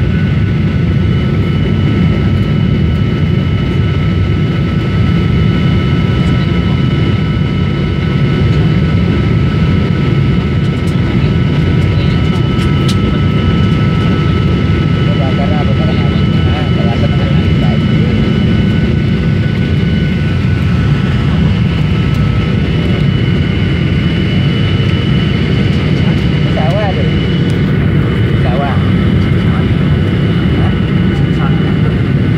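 Steady jet engine and airflow noise inside the cabin of a Boeing 737 in flight, heard from a window seat beside the engine: a loud low rumble with a few steady high whining tones over it.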